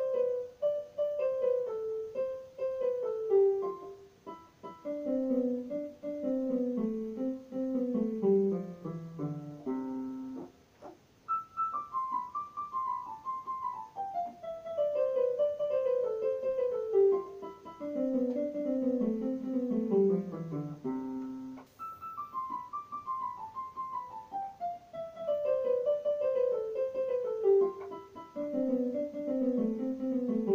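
Piano keyboard playing a slow descending run of single notes, mi mi re do ti re re do ti la do do ti la so fa mi, stepping down by pairs of repeated notes into the lower register. The run is played three times, each pass about ten seconds long.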